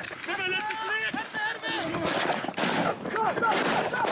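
Automatic rifle fire: rapid shots in quick succession from about two seconds in, with men shouting in the first half.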